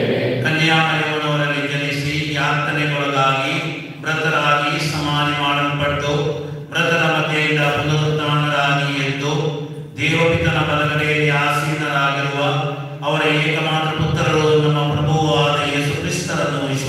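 Liturgical hymn being sung in phrases, each breaking off after about three seconds, over a steady held low note.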